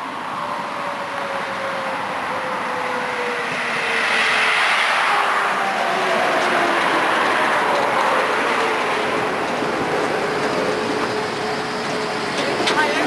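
Electric tram pulling into a stop: its running noise swells as it passes close, with a whine that falls in pitch as it slows, then settles into a steady hum as it comes to rest.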